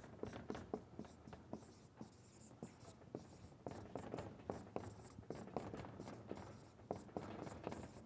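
Marker writing block capitals on a whiteboard: a faint, irregular run of short strokes and taps.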